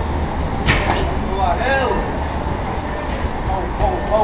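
Strikes landing on Muay Thai pads held by a trainer, with a sharp smack a little under a second in and another near the end. A steady low rumble of traffic runs underneath, and short vocal calls come near the middle.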